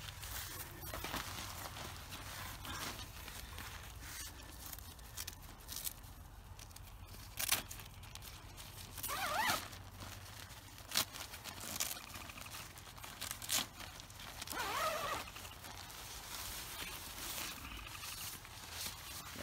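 Nylon tent fly rustling as it is handled, with a few short sharp rips or clicks that fit velcro tabs being worked. Two brief wavering calls sound partway through.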